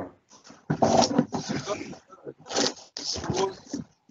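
A dog vocalizing in three short bursts, about a second in and twice near the end, mixed with brief voices, heard over a video call's audio.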